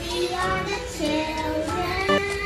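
A young girl singing into a microphone with music, holding long sustained notes.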